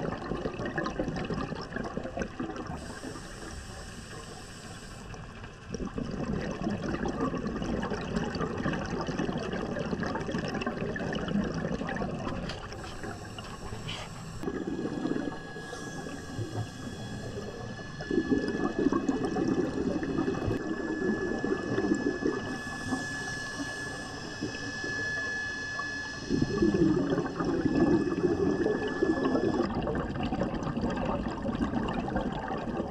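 Scuba breathing heard underwater through a diver's regulator: short hissing inhalations alternate with longer bursts of exhaled bubbles rushing out, repeating every few seconds.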